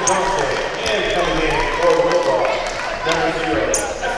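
Basketball bouncing on a hardwood gym floor, several bounces echoing in the large hall, with a short high squeak near the end.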